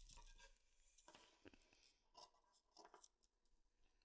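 Near silence, with a few faint rustles of a hand smoothing woolen knit fabric on a table.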